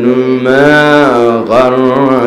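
A man's voice chanting a melodic line in long, held notes, one note swelling and falling away and a new one beginning about a second and a half in.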